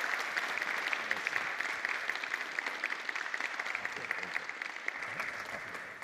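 Audience applauding, a dense patter of many hands clapping that tapers off toward the end.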